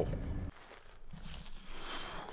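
Low road rumble inside a moving vehicle's cabin, which cuts off about half a second in, followed by faint, soft footsteps on a dirt track.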